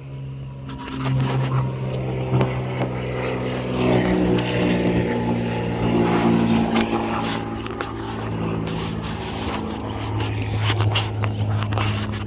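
An engine running close by, getting louder about a second in, its pitch shifting up and down in steps.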